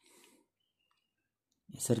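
Near silence, broken only by a faint brief noise at the start, before speech resumes near the end.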